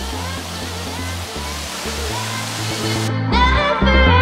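Steady rush of a waterfall pouring into a pond, over background pop music with a bass line. The water sound cuts off suddenly about three seconds in, and the music with a singing voice carries on.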